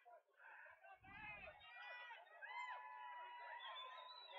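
Near silence, with faint distant voices calling and shouting across a football field.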